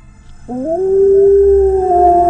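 A wolf howl: one long call that rises quickly about half a second in, then holds at a steady pitch.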